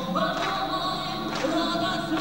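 Live song performance: sustained choir-like voices held over the musical accompaniment, changing note every second or so, in a passage between the sung lines.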